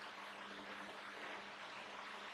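Quiet room tone: a faint steady hiss with a low hum.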